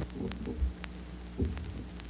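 Vinyl LP groove noise on a turntable just after the song ends: a low, steady hum with two soft low thumps and a few faint clicks as the stylus rides the unrecorded groove.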